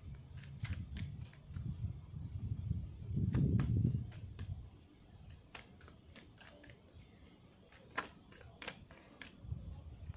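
Irregular light clicks and flicks of a card deck being handled, over a low gusty rumble of wind on the microphone that is loudest about three to four seconds in.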